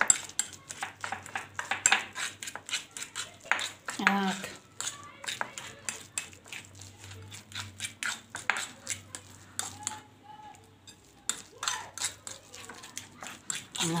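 A metal spoon clinking and scraping against a bowl as it stirs a mashed potato and egg mixture, a quick irregular run of small clicks.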